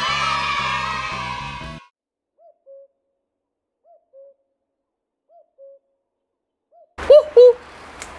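Music swells and stops about two seconds in. Then a common cuckoo calls its two-note, falling "cuck-oo" three times, about a second and a half apart. A fourth call is cut off by a louder two-note sound near the end.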